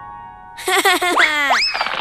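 Cartoon sound effect: a springy boing with a fast upward pitch slide, over a faint held chord of background music.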